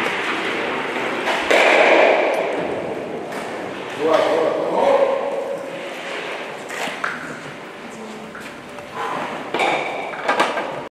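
A stock (Eisstock) sliding over the hall's asphalt court with a rushing scrape, then clacking into other stocks at the target about four seconds in, with a short ringing ping. A few lighter knocks follow near the end.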